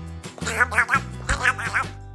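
A person doing a Donald Duck voice, rapid garbled quacking speech that can't be made out, over light background music.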